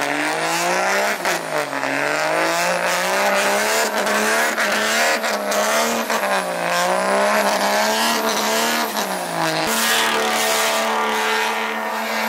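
Ram heavy-duty pickup's Cummins diesel revving up and down again and again during a burnout, with the rear tyres spinning and squealing on the pavement. Near the end the revs hold steady.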